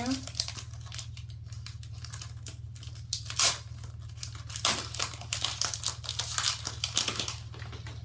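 Foil Pokémon TCG Generations booster pack being torn open and crinkled: a run of crackling rustles that gets busier in the second half, over a steady low hum.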